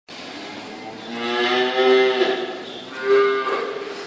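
Holstein dairy cow mooing twice, a longer call about a second in and a shorter one about three seconds in.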